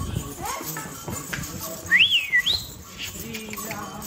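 A short whistle about halfway through: a quick rise and fall in pitch followed by a second rising note. It sits over a low jumble of clicks and rustling from the moving ride.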